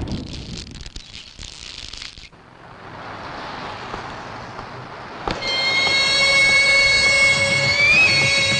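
Film soundtrack: a noisy rushing sound fades out over the first two seconds. About five seconds in, music starts with several high, steady held tones, drone-like.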